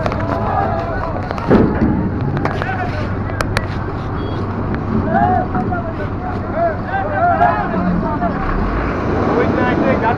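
Busy traffic: vehicle engines running at low speed with a steady low hum, under the chatter of people's voices nearby.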